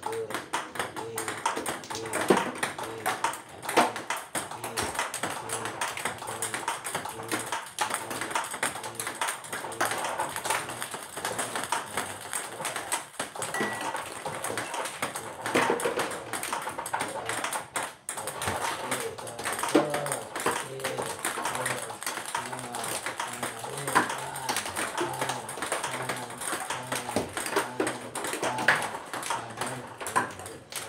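Table tennis ball in a continuous run of backhand practice: light taps as the ball bounces on the table and is hit off the rubber of the paddle, with music underneath.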